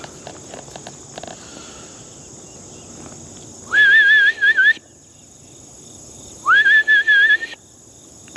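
A man whistling a warbling call twice, each about a second long, rising sharply and then trilling, to call bison over. Insects buzz steadily underneath.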